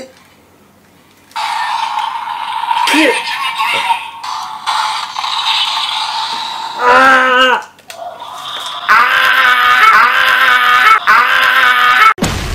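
Dramatic music playing while a man yells and groans in mock agony, with loud drawn-out vocal cries around the middle and again in the last few seconds.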